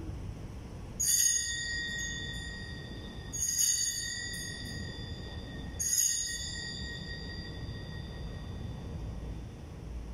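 Small altar bell struck three times, about two and a half seconds apart, each stroke ringing on in several high tones and fading slowly: the sanctus bell rung during the Eucharistic Prayer of the Mass.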